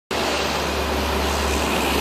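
Steady outdoor background noise: an even low rumble with a hiss over it, unchanging throughout.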